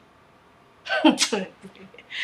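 A woman's short vocal outburst of distress, a cry or sob about a second in, after a quiet start.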